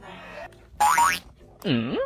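Cartoon-style comedy sound effects: a loud sliding tone that rises in pitch about a second in, then a springy boing whose pitch dips and comes back up near the end.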